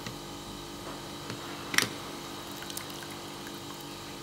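Brewed green tea trickling steadily out of a lidded porcelain tasting cup through the gap under its lid into the tasting bowl, with a single light click a little under two seconds in.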